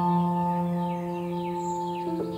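Ambient background music: a single struck bell- or singing-bowl-like note rings on and slowly fades, with bird chirps above it.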